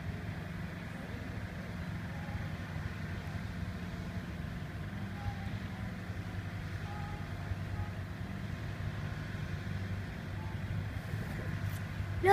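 Avro Lancaster bomber's four Rolls-Royce Merlin V12 engines in a steady, even drone as the aircraft taxies along the runway.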